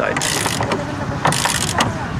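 Ratchet wrench clicking as it loosens a chain tensioner clamped round a plastic pipe joint, in two short bursts of strokes about a second apart, over steady site background noise.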